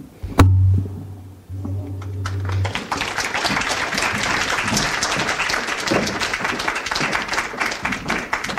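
An audience applauding: a dense patter of clapping builds up about two and a half seconds in and carries on steadily. Before it there is a sharp thump and a low electrical hum for about two seconds, typical of a microphone being handled or switched over.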